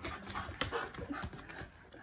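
A Shiba Inu panting and moving about on a tatami mat: a run of short, soft scuffs and taps from its paws and body, with its breathing.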